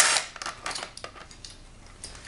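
A cordless drill-driver spinning a bolt out of a GY6 scooter engine's plastic fan shroud, cutting off just after the start, followed by faint clicks and light rattles of the shroud, bolt and tool being handled.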